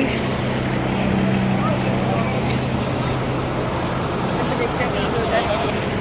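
Steady outdoor background noise with a low, even hum that fades out partway through, and faint voices of a crowd now and then.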